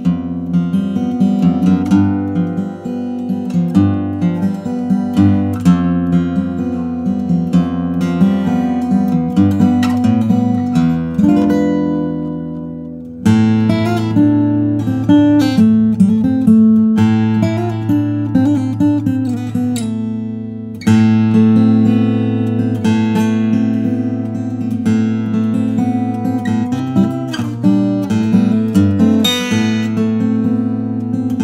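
Laurie Williams Signature Model acoustic guitar in ancient whitebait kauri, fingerpicked solo: a melody of plucked notes over held bass notes. Twice, about twelve and twenty seconds in, a chord is left to ring and fade before the playing picks up again.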